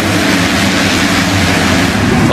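A full gate of 250cc motocross bikes at full throttle off the start, many engines blending into one loud, steady din.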